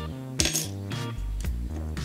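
Background music, with one sharp light clatter about half a second in: a thin black plastic washer from a small planetary gearbox set down on a wooden tabletop.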